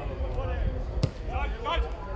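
A single sharp thump of a football being kicked hard, about a second in, with men's voices calling out on the pitch.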